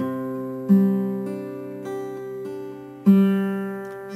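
Electric guitar fingerpicking a Cadd9 chord in a steady blues pattern, the notes left ringing. Strong low notes are struck at the start, about 0.7 s in and about 3 s in, with single higher strings picked in between.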